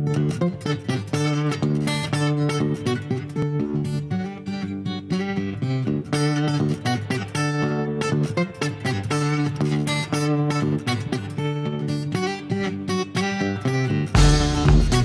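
Acoustic guitar strumming chords in a steady rhythm, playing on its own as the opening of a rock song.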